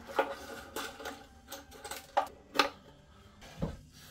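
Violin strings being slackened off: wooden tuning pegs turned in the pegbox, giving a series of about eight sharp clicks and creaks, with faint ringing from the loosening strings.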